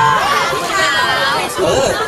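Speech with crowd chatter: voices talking over one another.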